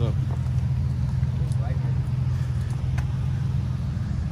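Steady low rumble of a car engine idling close by, with faint voices over it.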